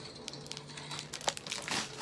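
Plastic candy bag crinkling as it is handled and set down: light, irregular rustles and a few small clicks.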